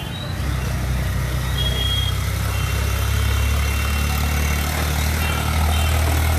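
A heavy engine idling: a steady low hum that steps up in loudness about half a second in and again near the end.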